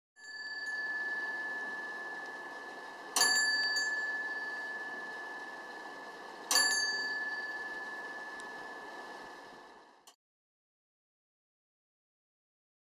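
Bell on a large Buddhist prayer wheel, struck by the wheel's striker arm as it turns: one clear ringing tone, struck again about every three and a half seconds, each strike dying away slowly. It cuts off suddenly near the end.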